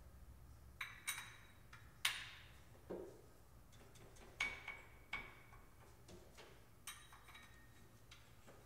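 Quiet, irregular sharp metallic clinks and taps from a socket and extension working on the crankshaft pulley bolt of a Porsche 996 flat-six as the engine is turned over by hand. Some of the clinks ring briefly.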